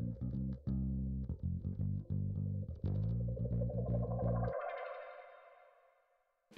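Instrumental background music with a plucked bass line and guitar. The bass drops out about three-quarters of the way through and the rest fades away.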